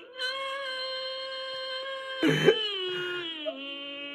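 A male auditioner's singing voice holding one long high note for about two seconds, then a short breath and a lower note that slides down. The singing is poor.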